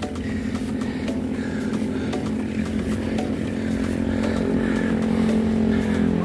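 A small engine running at a steady pitch and growing gradually louder, with scattered light clicks and rattles over it.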